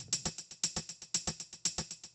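Soloed shaker loop playing a quick, steady pattern of short hits, run through a Valhalla Delay plug-in set to double time with minimal feedback.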